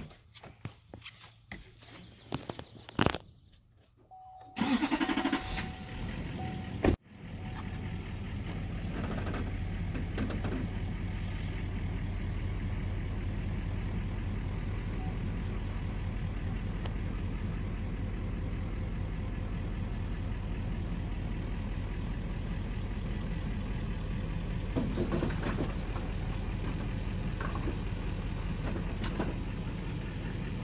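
Pickup truck starting up after a sharp door-like knock, then running steadily as the truck is moved under a gooseneck trailer. A steady tone sounds for a couple of seconds before the knock.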